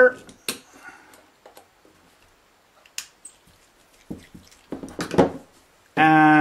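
Scattered small metal clicks and taps of a hex screwdriver tightening the screws of a metal RC helicopter tail gearbox, with brief murmurs of voice about four to five seconds in.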